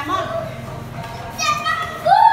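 Young children's high-pitched voices while playing: a short cry at the start and another, higher call about one and a half seconds in.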